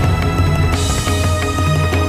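Background music score: a steady low bass note under sustained, held chords.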